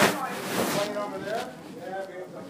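People talking quietly in a room, the words indistinct, with a sharp knock right at the start and another about half a second later.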